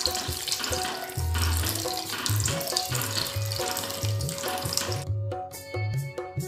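Liquid pouring and splashing into a pan of pumpkin puree as it is stirred with a spatula, a steady hiss that stops about five seconds in. Background music with a steady low beat plays throughout.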